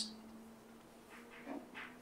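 Quiet room with a faint steady hum. About halfway through there is a soft, faint murmur from a person's voice.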